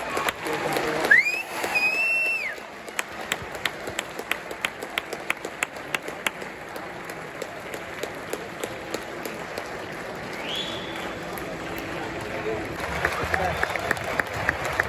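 Football crowd in a stadium stand, with someone clapping in a steady rhythm of about three claps a second, over crowd chatter. A high call rises and falls near the start and another comes about ten seconds in.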